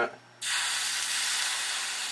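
Water poured onto a hot metal guitar tremolo claw, hissing and sizzling as it boils off into steam and quenches the soldering-hot metal. The hiss starts suddenly about half a second in, then slowly fades.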